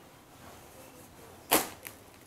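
Silk sarong cloth snapping taut as it is flicked open: one sharp snap about one and a half seconds in, then a smaller one a moment later.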